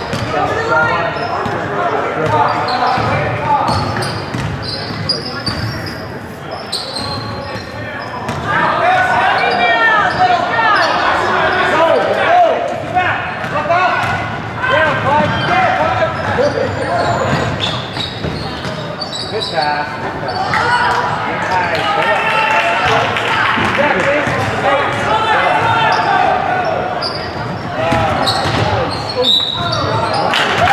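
Basketball dribbled and bouncing on a hardwood gym floor, with the overlapping shouts and chatter of players and spectators echoing in a large gym.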